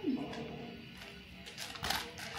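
A baby's short cooing sound, sliding up and then down in pitch, right at the start, over soft background music. A brief rustling clatter comes near the end.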